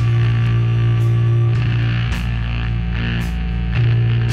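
Live doom-rock band playing a slow, heavy passage: bass guitar and electric guitar holding long low notes over drums, with a cymbal crash about once a second.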